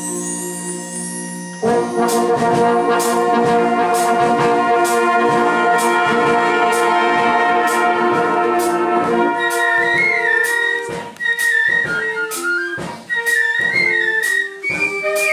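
Drum and bugle band playing. Soft held notes with a high small-flute line open it; about two seconds in, the full brass of bugles and trumpets comes in loud on held chords over a steady drum beat. From about ten seconds the brass drops away, and a high flute melody runs on over the drums.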